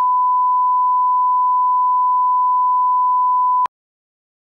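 Bars-and-tone line-up test tone: one steady pure pitch that cuts off suddenly near the end.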